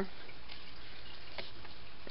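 Quiet room tone: a steady low hiss, with one faint click about a second and a half in.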